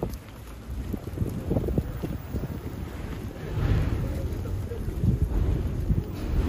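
Wind rumbling on the microphone, with the faint, indistinct voices of a large crowd walking along a street.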